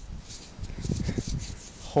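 Irregular close rustling and rubbing with a few soft low knocks: handling noise as a small stone arrowhead is turned over in the hand.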